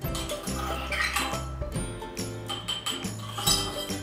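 Background music over a metal spoon clinking against a small glass tumbler of water as sand is tipped in and stirred.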